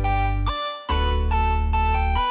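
Background electronic music with keyboard notes over a heavy, steady bass, which drops out briefly about half a second in.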